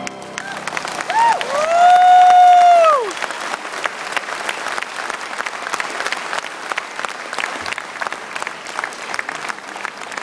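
Audience applauding steadily after a choral-orchestral piece ends. Near the start a loud call rises, holds for about a second and a half, and falls away over the clapping.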